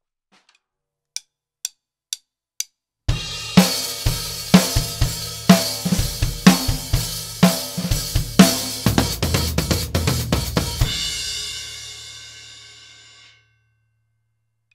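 Acoustic drum kit: four evenly spaced clicks count in, then a groove with hi-hat, snare and bass drum. A dense hi-hat fill runs from about nine to eleven seconds in, and the last cymbal hit rings out and fades away.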